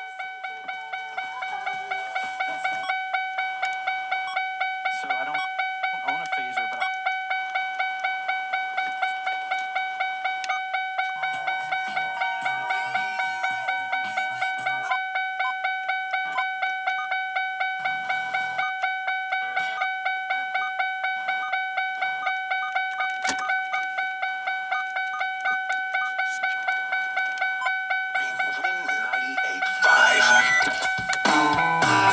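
An electronic chime beeping steadily at one pitch, about three beeps a second, with faint radio sound beneath it.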